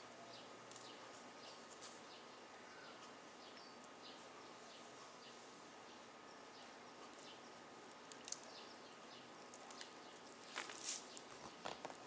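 Near silence: faint rustling and light ticks of butcher's twine and paper being handled as a rolled pork belly is tied, with a few louder, sharper rustles near the end.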